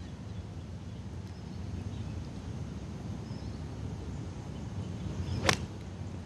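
Golf club striking the ball on a tee shot: a single sharp click about five and a half seconds in, over a steady low background hum of the course.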